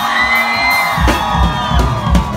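A live band with drum kit and electric guitars playing amplified music outdoors. The drums and bass drop out for about a second while held high notes and crowd whoops carry on, then the full band comes back in.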